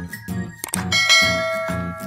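Background music with a steady beat; about a second in, a bright bell chime sound effect rings out over it for about a second, the notification-bell cue of a subscribe-button animation.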